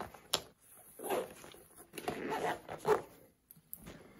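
Zipper on a fabric backpack pouch being pulled shut, heard as a few short rasps about a second apart with a click near the start and fabric handling.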